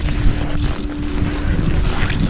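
Wind buffeting the microphone, a heavy, uneven low rumble.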